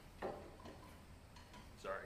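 Two light knocks from a white plastic trough and a wooden block being handled, one just after the start and one near the end.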